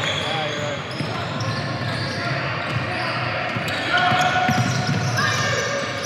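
Indoor basketball game sound: a basketball bouncing on a hardwood court, with the chatter and calls of players and spectators echoing around a large gym.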